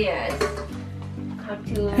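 Crockery and cutlery clinking as dishes are handled at a kitchen counter: a handful of separate light clinks.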